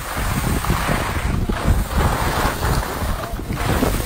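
Wind buffeting the microphone of a downhill skier, with the hiss of skis sliding and scraping over the snow swelling and fading several times.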